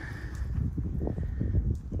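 A person's footsteps, a run of irregular soft thuds, with low rumble on the microphone.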